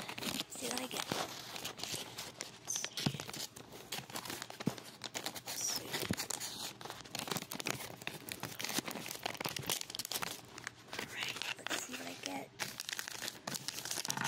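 Crinkly packaging of a Disney Doorables mystery pack crackling and tearing as it is handled and torn open by hand, with dense irregular crackles throughout.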